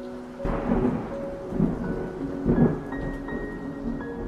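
A song intro built from thunderstorm sound effects: three rolls of thunder over rain, under soft, sustained keyboard or mallet notes. The first roll starts about half a second in, and the loudest comes past the middle.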